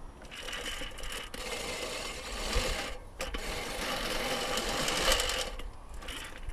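Electric motor and propeller of a Sapphire DLG-type RC glider running under power with a steady whine, breaking off for a moment about three seconds in and cutting off shortly before the end.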